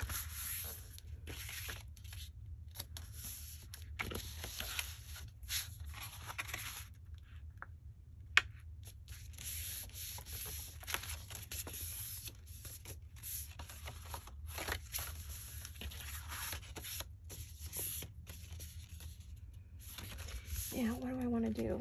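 Paper being handled by hand on a cutting mat: rustling, rubbing and sliding as sheets are folded, pressed and moved, with one sharp tap about eight seconds in. A low steady hum runs underneath.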